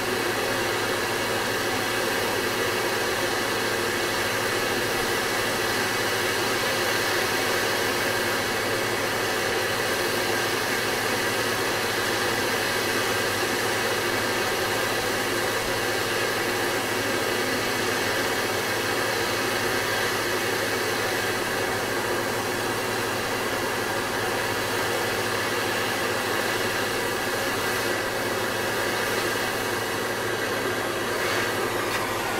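Gas torch flame burning with a steady, continuous hiss, heating a brass joint for silver soldering.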